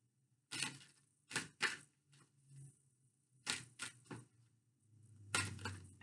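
A tarot deck being shuffled by hand: about eight short, crisp card flicks and slaps with pauses between them.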